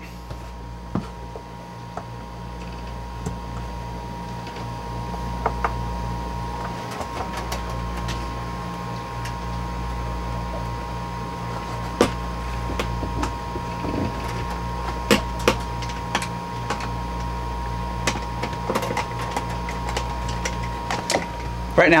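Scattered clicks and taps of a metal freezer cold plate being fitted and its machine screws started into neoprene blind fasteners, over a steady low machine hum with a faint high tone.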